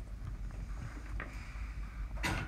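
Low steady background rumble and microphone hum. About a second in comes a light tap, then faint scratching, from a stylus writing on a tablet screen.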